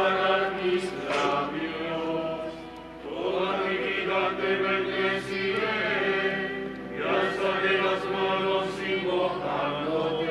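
Voices singing a slow liturgical hymn in phrases of about three to four seconds each.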